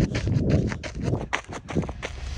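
Running footsteps striking a gravel road at a steady cadence of about three to four a second, with wind rumbling on the phone's microphone.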